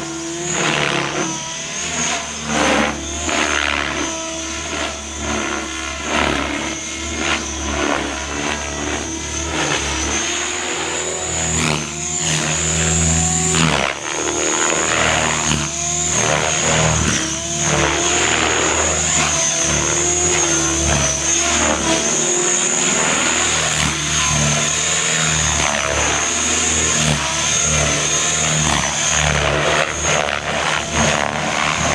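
Align T-Rex 550 electric RC helicopter flying aerobatics: a steady high whine from the motor and gears over the rotor noise, with the pitch sliding up and down as the blades load and unload. It gets louder about twelve seconds in.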